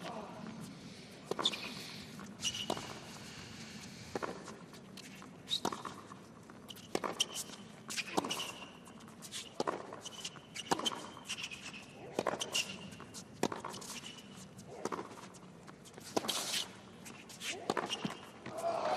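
Tennis rally on a hard court: racket-on-ball strikes about every second and a half, around a dozen in all, with short high-pitched sneaker squeaks between them.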